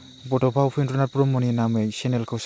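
A man speaking, starting after a short pause, over a steady high-pitched insect trill in the background.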